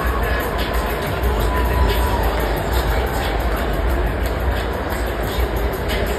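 Steady crowd din inside a domed stadium, with a heavy low rumble and a faint sharp beat about twice a second.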